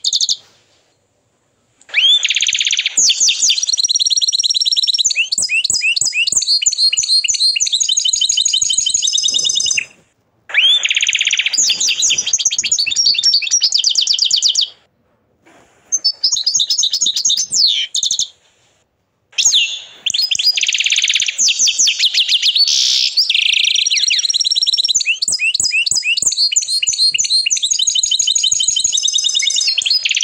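An agate canary singing loud, long song phrases made of rapid trills and rolls of high notes. The phrases are broken by short pauses: one just after the start, and others about 10, 15 and 19 seconds in.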